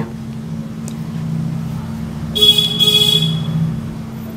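Traffic noise: a vehicle rumbling past, with a brief high-pitched horn toot about two and a half seconds in, over a steady low hum.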